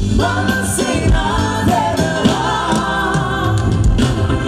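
Live band music with a woman singing a Sinhala pop song into a microphone, over sustained bass and keyboard notes with a steady drum beat.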